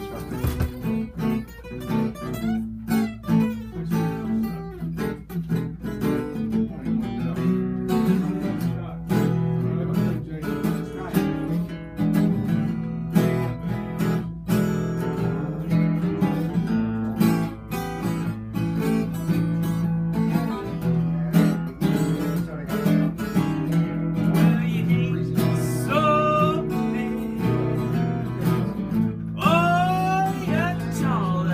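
Two acoustic guitars, a Martin 00 in mahogany and a Silvertone Sovereign, played together in a continuous strummed and picked jam.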